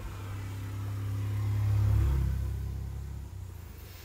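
Speedboat engine running with a low, steady hum that swells to its loudest about two seconds in, then fades.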